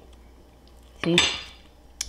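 Faint handling of a crisp baked wonton shell against a ceramic ramekin as it is lifted out, with one short spoken word about a second in.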